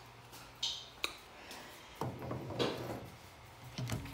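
Quiet handling sounds: a brief rustle, a couple of sharp clicks and a short stretch of scraping and knocking, as a reptile enclosure's sliding glass door is opened.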